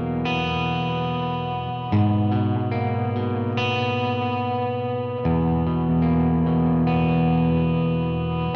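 Electric guitar playing slow, ringing chords through the Science Amplification Mother preamp pedal's channel A and a Quiet Theory Prelude reverb, with a light drive. A new chord is struck about two seconds in and again around five seconds, and fresh high notes ring out over them in between.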